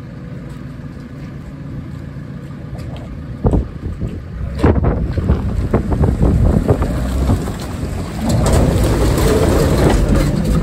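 Diesel engine of a JCB TM310S pivot-steer telescopic wheel loader idling steadily, then a loud knock about three and a half seconds in. From then on the engine runs louder with a string of clunks and some wind on the microphone, and near the end it runs steady and louder still.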